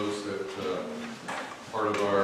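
A man speaking, his words not picked up by the transcript.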